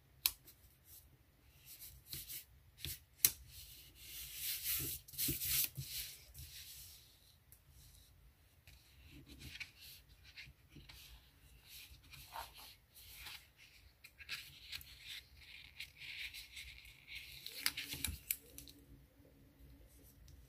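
Paper planner sticker being peeled and handled, then pressed and rubbed down onto a paper page: crackling, scraping paper noises in two longer stretches, with a couple of sharp clicks early on.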